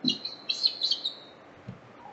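Bird chirping in the background: a quick run of short, high chirps in the first second or so.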